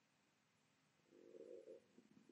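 Near silence: room tone, with a faint low rustling swell about a second in that lasts under a second.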